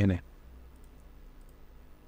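A few faint computer mouse clicks about a second in, over a low steady hum from the recording.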